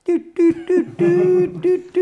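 A man's voice singing a few short notes and then longer held notes at one steady pitch, in a mock opera style.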